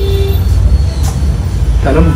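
A low, steady rumble, with a voice starting near the end.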